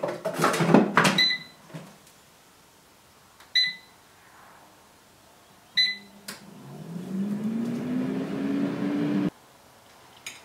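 Some clatter of handling, then a small countertop kitchen appliance giving three short electronic button beeps a couple of seconds apart. After the third beep its motor runs for about three seconds, rising in pitch, and stops abruptly.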